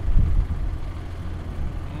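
John Deere 6930 tractor's diesel engine idling with a steady low rumble while the tractor stands still with the cultivator lowered.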